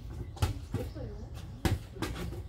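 A collapsible mesh food-cover tent being handled over a plastic tub: two sharp clicks, about a second apart, as its frame knocks against the tub.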